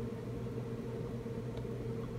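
Steady low electrical hum with a fainter higher tone over a light hiss, from running radio and computer equipment; it does not change.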